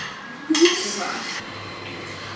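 Glass cloche lid clinking against its glass cake stand as it is lifted off. There is one sharp chink about half a second in, which rings for nearly a second.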